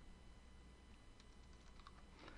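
Faint typing on a computer keyboard: a few quiet key clicks in the second half, over near silence.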